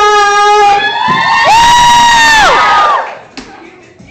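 Loud, high-pitched voices held in long drawn-out notes: one note climbs to a high held pitch about a second and a half in, then slides down and breaks off about three seconds in.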